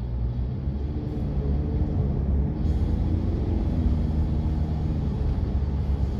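Steady low road and engine rumble heard from inside the cabin of a moving car.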